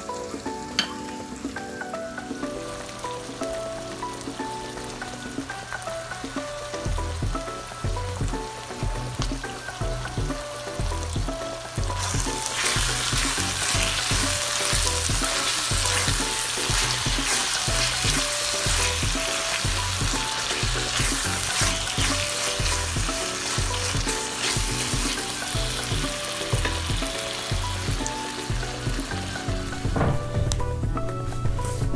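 Ground beef sizzling in a cast-iron skillet while being stirred with a spatula, the sizzle getting much louder partway through. Background music with a steady beat plays over it.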